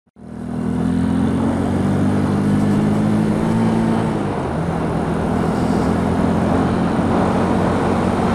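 Kymco K-Pipe 125 motorcycle's small single-cylinder engine running at a steady cruising speed, heard from inside a helmet under wind and road noise. The engine note dips slightly about halfway through.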